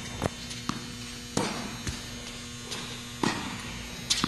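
Tennis ball hit back and forth in a rally on an indoor court: two louder racket strikes about two seconds apart, with softer ball bounces between. A steady electrical hum runs underneath.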